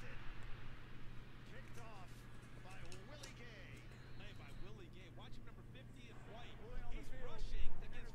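Faint television broadcast audio of an NFL game: commentators' voices low in the mix over a steady low hum, getting a little louder near the end.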